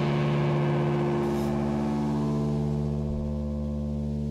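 A held synthesizer chord or drone of several steady pitches with a slight wobble, slowly fading.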